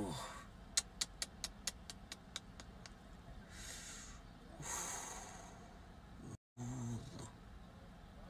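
A tired man breathing heavily: two long breathy sighs around the middle and a short low groan near the end. About a second in there is a quick run of about ten faint clicks.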